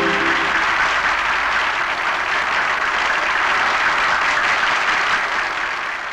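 Large theatre audience applauding, a dense, steady clapping. The final sustained note of the song dies away about half a second in.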